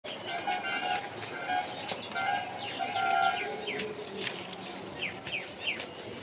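Birds calling: a run of short notes held at a steady pitch for the first three seconds or so, then quick falling chirps near the end.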